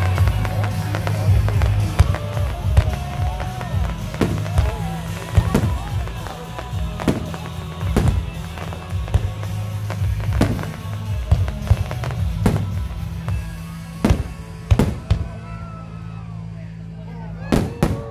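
Fireworks display: aerial shells bursting in a rapid string of sharp bangs, with two loud bangs close together near the end. Music with a heavy bass plays underneath.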